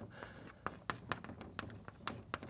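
Chalk on a blackboard as symbols are written: a quick, irregular series of short sharp taps and scrapes.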